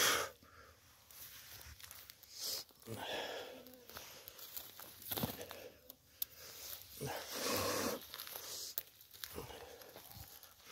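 Rustling of grass and dry leaf litter as someone handles freshly picked parasol mushrooms into a wicker basket and steps on through the undergrowth, in several short swishes about a second apart.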